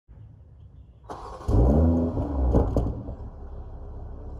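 BMW M340i's turbocharged inline-six starting up on its stock exhaust: the starter turns over briefly about a second in, the engine catches with a loud rev flare that rises and falls, then settles to a steady idle from about three seconds.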